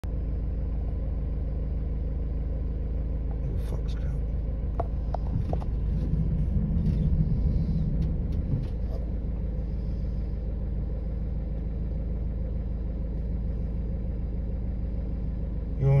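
Car engine running, heard from inside the cabin as a steady low rumble. A few light clicks come about four to five seconds in, and the rumble swells louder for a couple of seconds around six to eight seconds in.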